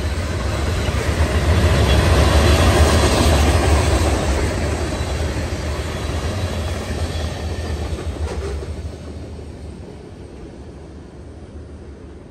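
Freight cars, mostly covered hoppers, rolling past on the rails with a steady rumble, loudest in the first few seconds, then fading away as the end of the train moves off down the line.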